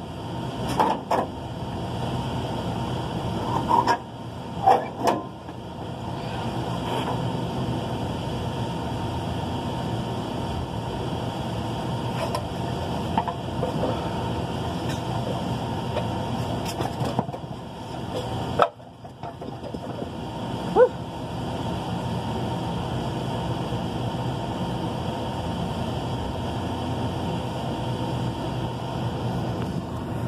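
Steady hum of rooftop air-conditioning machinery, broken by a few short metal knocks and squeaks from hand work on an opened package unit. The loudest come about five seconds in and about twenty-one seconds in.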